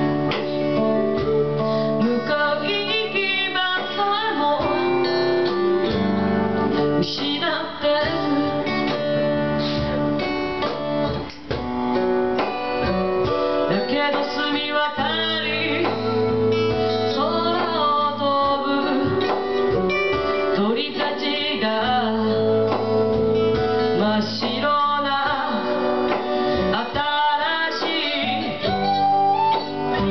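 Live acoustic band music: a strummed acoustic guitar and an electric guitar under a melody from female vocals and a small end-blown flute, at a steady level.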